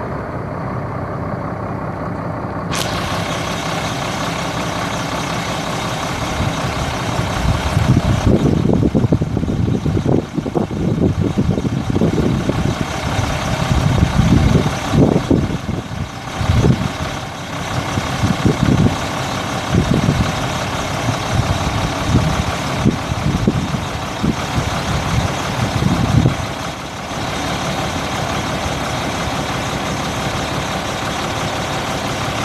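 The dump truck's Cummins 8.3-litre six-cylinder turbo diesel runs at idle, with a steady hiss that comes in suddenly about three seconds in. For most of the middle there are heavy, uneven low rumbles over the engine, which settle back to the plain idle near the end.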